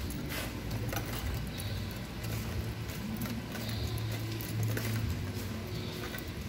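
Background noise of a large indoor space: a steady low hum with faint distant voices and occasional light clicks.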